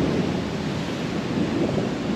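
Wind buffeting the camera's microphone on a ship's open bow deck at sea: a steady rushing rumble with no distinct events.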